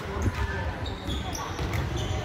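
Volleyballs being hit and passed during warm-up: a scatter of sharp smacks echoing in a large gym, over the chatter of players.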